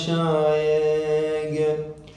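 A man's voice chanting a line of Arabic poetry unaccompanied, holding one long, steady note on the end of the phrase that fades away near the end.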